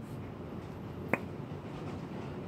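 A single sharp pop about a second in, as the piston of a .460 Rowland V2 recoil damper motor is pulled free of its cylinder and the tight air seal lets go.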